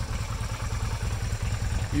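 Yamaha Virago 250's air-cooled V-twin idling steadily with a low, even pulse; the engine is still cold and running a bit rough.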